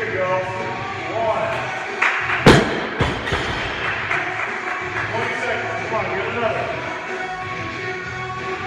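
Loaded barbell with rubber bumper plates dropped to the floor about two and a half seconds in: a loud thud, then a smaller bounce half a second later. Background music with singing plays throughout.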